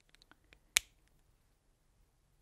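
A few faint ticks, then one sharp click about three-quarters of a second in: a marker pen and its cap being handled.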